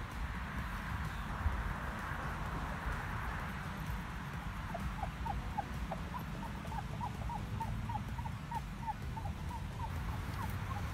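A cloth wiping a car windshield, rubbing on the glass. From about halfway through come short, rising squeaks, about three a second. A steady low rumble runs underneath.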